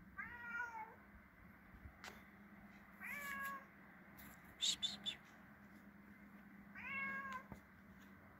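Domestic cat meowing three times, each meow about half a second long and a few seconds apart, each falling slightly in pitch. Midway, between the second and third meows, comes a quick cluster of short, sharp, high-pitched sounds, louder than the meows.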